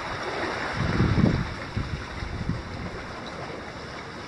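Wind buffeting the microphone over a steady rushing background, with a stronger low gust about a second in.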